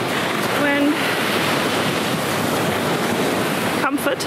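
Waves breaking and washing up a sandy beach, a steady rushing noise, with some wind on the microphone mixed in.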